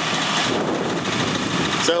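Steady rushing noise of wind and water aboard a sailboat under way.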